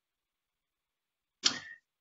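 Silence on a video-conference audio feed, broken about one and a half seconds in by a single short, sharp click-like noise, as a participant's microphone opens before he speaks.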